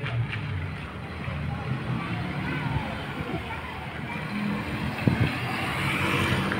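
A car's engine running on the street with indistinct voices around it, and a sharp knock a little after five seconds in.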